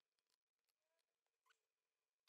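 Near silence: the sound is essentially muted.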